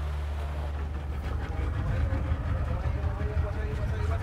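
A small boat's motor running steadily, a low rumble mixed with wind and water noise, with faint voices underneath.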